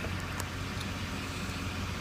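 Duramax V8 diesel idling steadily during a DEF reductant system test, with a couple of faint clicks about half a second in.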